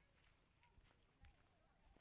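Near silence: faint outdoor ambience with a few faint ticks and, in the second half, a faint wavering whistle-like tone.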